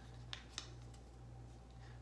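Two faint, crisp ticks about a quarter second apart in the first second, from the paper backing of a strip of kinesiology tape being handled, over a low steady room hum.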